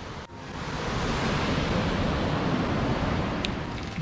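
River rapids rushing over rock ledges, a steady wash of white water that swells in over the first second after a brief drop-out.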